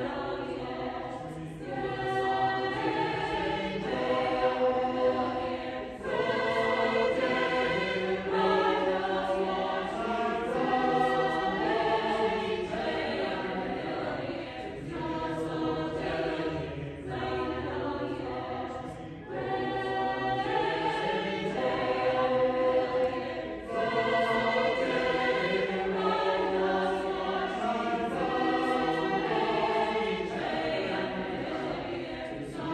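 Mixed choir of men's and women's voices singing, phrase after phrase, with short breaks in loudness between phrases.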